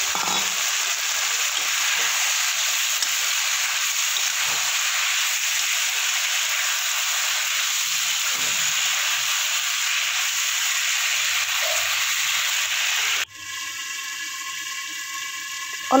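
Cauliflower and potato sizzling as they fry in oil in an aluminium kadai while being stirred. The sizzling cuts off suddenly about three-quarters of the way through and gives way to a quieter, steady hum.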